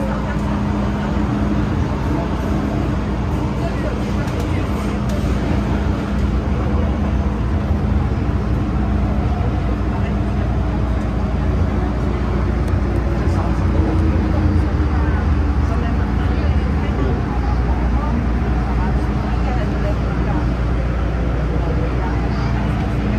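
MTR M-train electric multiple unit running between stations, heard from inside the car: a continuous rumble of wheels on rails with a steady hum, growing a little louder after the first several seconds.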